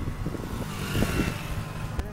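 A car passing on the street; its noise swells toward the middle and then fades.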